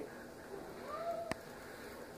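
A quiet room with a faint, brief voice-like sound whose pitch rises and falls, then a single sharp click a little past halfway.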